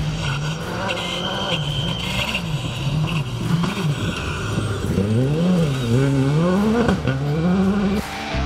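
Škoda Fabia Rally2 evo rally car's 1.6-litre turbocharged four-cylinder engine revving hard on a gravel stage, its pitch climbing and dropping again and again through gear changes and lifts, with quicker, wider swings in the second half.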